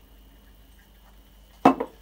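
Quiet kitchen room tone with a faint steady hum, then a spoken word near the end.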